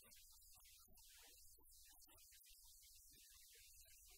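Near silence: a faint, steady low hum under a light hiss.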